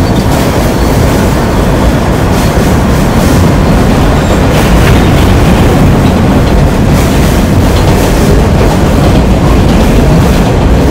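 Train running on rails: a loud, steady rumble with faint scattered clicks from the wheels and track.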